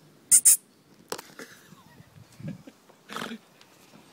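A hedgehog huffing right at the microphone: a quick pair of sharp puffs near the start, then quieter snuffling and rustling in dry leaves.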